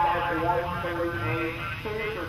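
Indistinct man's voice talking over a public-address system, with a low background rumble.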